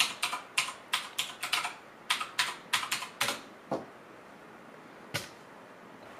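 Typing on a computer keyboard: a quick run of keystrokes entering the router's IP address into a browser, then a pause and two single keypresses, the last about five seconds in.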